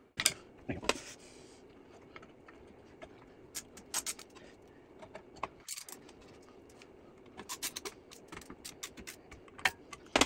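Light metal clicks and taps of a hand screwdriver, screws and a steel rack-ear bracket being fitted to the metal case of a Soundcraft Ui24R mixer. Two sharper knocks come within the first second, then scattered clicks, with a quick run of small clicks near the end.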